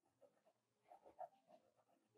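Near silence, with the faint, irregular scratching of a pencil stroking drawing paper, a little louder about a second in.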